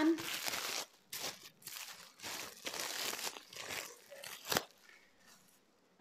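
Thin black plastic wrapping crinkling and rustling in bursts as a bottle is pulled out of it, followed by a single sharp knock about four and a half seconds in.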